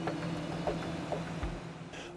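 Steady low drone of a tractor engine heard from inside the cab.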